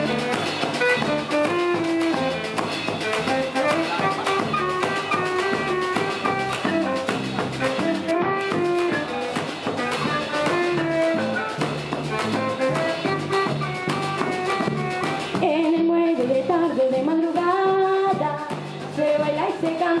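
Youth band playing live Colombian Pacific music: saxophone, electric bass, drum kit and marimba, with a girl singing into a microphone, the voice standing out near the end.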